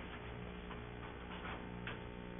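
Steady low electrical hum with a few faint, unevenly spaced clicks and taps.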